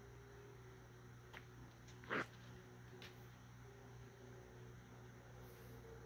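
Near silence: room tone with a faint steady low hum, and one brief soft sound about two seconds in.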